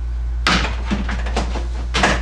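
A plastic tote lid fitted with wire mesh being set down onto a plastic storage tote. It starts about half a second in with a knock, then rattles and knocks for over a second, with another sharp knock at the end as it settles closed.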